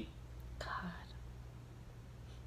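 A single short whispered exclamation over a low, steady room hum; otherwise quiet.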